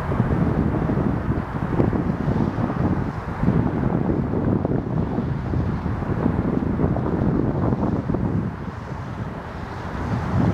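Wind buffeting the microphone in gusts, a low rumbling noise that eases a little near the end.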